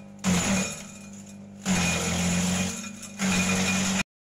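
Electric-motor shredder chopping gliricidia branches: three loud crunching bursts of about a second each as stems are fed into the blades, over the motor's steady hum.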